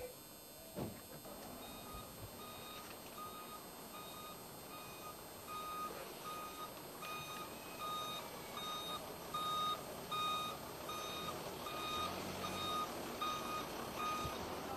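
Ambulance reversing alarm: short single-tone beeps at a steady rate of about two a second, starting about two seconds in and getting louder as the vehicle backs up. A short knock about a second in.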